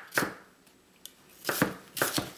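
Chef's knife chopping onion on a cutting board: one strike just after the start, then after a pause of about a second a few quick strikes near the end.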